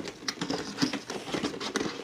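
Fingers handling and picking at a large cardboard Funko Pop box: a scatter of light taps, clicks and scrapes on the cardboard.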